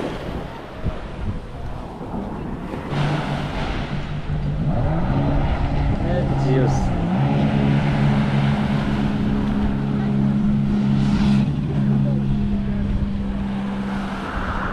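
Jet ski (personal watercraft) engine running. Its pitch climbs about four to five seconds in, dips briefly midway, then holds a steady drone.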